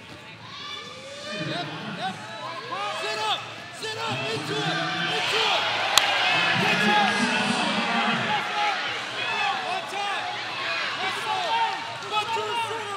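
Unintelligible shouting from coaches and onlookers during a wrestling scramble, loudest in the middle, with one sharp smack about six seconds in.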